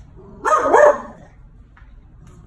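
A crated dog barks once, a short bark about half a second in.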